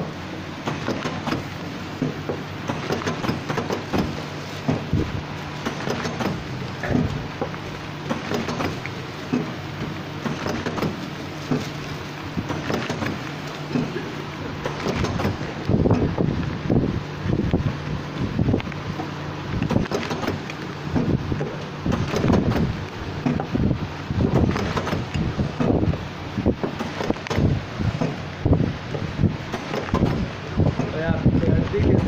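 Automatic soap packing machine running: a steady low hum with irregular clicking and clatter from its moving parts and the wrapped soap bars. From about the middle on, louder knocks and rubbing come close to the microphone as the bars are handled.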